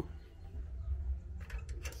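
Low steady rumble of handling noise on a handheld camera's microphone as it is carried, with a few faint clicks about one and a half seconds in.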